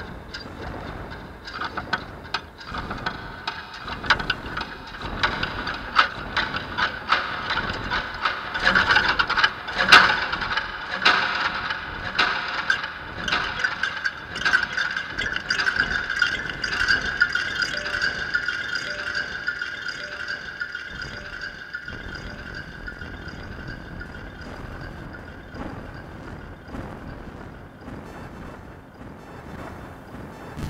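Taps, knocks and rattles on a box of glass and guitar strings, picked up by piezo contact mics, mixed with a high sustained electronic tone through a delay. The loudest hit comes about ten seconds in. The tone holds through the middle and thins out near the end, while a lower layer cuts off suddenly a little past twenty seconds.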